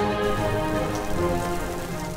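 Intro music sting for a logo animation: a sustained chord of held tones over a steady hiss of noise, gradually fading toward the end.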